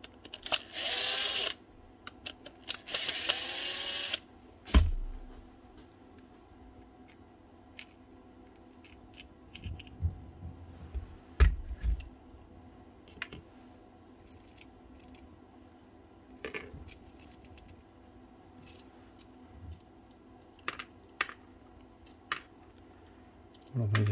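Cordless power driver with a long bit running in two short bursts, each a second or so long, backing out the screws of a Makita drill's plastic gearbox housing to open it. After that come scattered small clicks and a few dull knocks of gearbox parts being handled and lifted apart.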